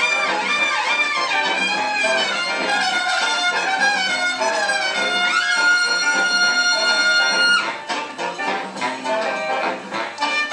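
Big band with brass and saxophone sections playing a Latin jazz arrangement; the horns rise into a long held high note that cuts off sharply about three-quarters of the way through, leaving quieter percussive hits and short accents.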